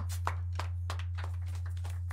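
Sparse hand clapping from a few people, sharp claps about six a second, over a steady low hum.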